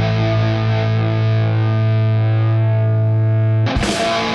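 Rock music ending: a held guitar chord rings steadily, then a loud final hit comes about three and a half seconds in as the song closes.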